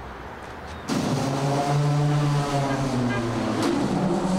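The World Peace Bell, a giant swinging bronze bell, struck by its clapper about a second in and ringing with a deep, wavering hum of many tones that carries on, then struck again near the end.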